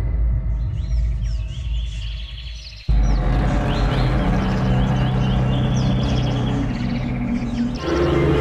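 Dramatic background score: a low drone fades down and cuts off abruptly about three seconds in, replaced by a louder, low, sustained rumbling music bed. Short bird chirps recur high above it throughout.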